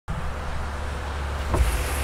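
Car engine running with a steady low rumble, heard from inside the cabin, with a short thump about one and a half seconds in.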